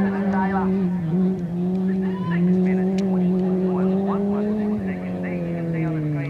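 Super 1650 class off-road race buggy engine held at a steady high note, its pitch creeping up, then falling away about five seconds in as the throttle eases off.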